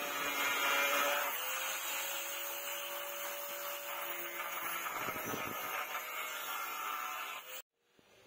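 Angle grinder with a thin cutting disc cutting through a brass rod: a steady motor whine under a loud hissing grind. It cuts off suddenly near the end.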